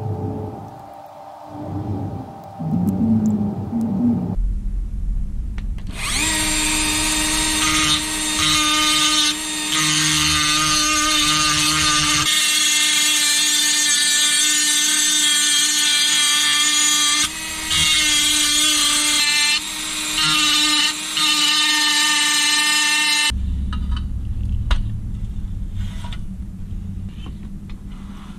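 Handheld rotary tool with a small grinding stone running at high speed, grinding the heads off steel rivets on a toy fire truck's boom to take it apart. It gives a steady high whine that starts about six seconds in, dips briefly twice as the bit's contact changes, and stops a few seconds before the end.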